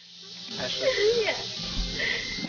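Quiet speech fading in from near silence over a steady hiss.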